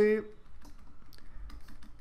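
A few faint, scattered clicks and taps from a pen stylus on a drawing tablet as handwriting is drawn.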